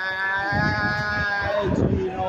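A man's long held shout on one steady note, carried over from just before and breaking off about one and a half seconds in, with crowd noise beneath.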